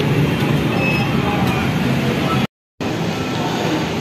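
Steady road-traffic noise with no distinct events. The sound drops out completely for a moment about two and a half seconds in.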